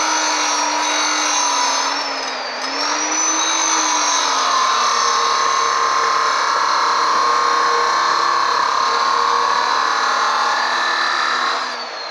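Bosch abrasive cut-off saw running and cutting steel bar: a steady motor whine that sags in pitch as the wheel bites, with a harsh grinding of the abrasive disc through metal growing louder from about four seconds in.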